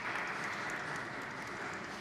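Audience applauding, an even patter of clapping.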